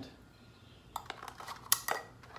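Metal carabiner clicking and clinking against a steel eyelet bolt as it is clipped on: a string of light clicks in the second half, the loudest near the end.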